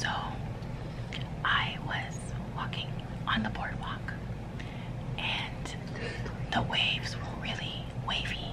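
A woman whispering close to the microphone in short breathy phrases, with a few small mouth clicks between them.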